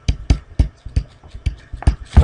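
A pen stylus tapping and clicking on a tablet screen while letters are hand-written, about eight irregular sharp taps in two seconds.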